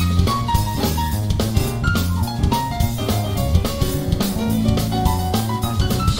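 Live jazz-fusion trio playing: drum kit with cymbals, electric bass and keyboard holding a steady groove.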